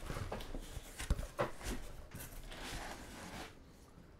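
Cardboard shipping case of trading card boxes being handled and opened: scraping and rustling of cardboard, with a couple of sharp knocks about a second in.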